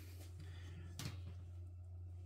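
Quiet room tone with a steady low hum and one faint click about a second in, as a glass baking dish is lifted off a metal wire rack with oven gloves.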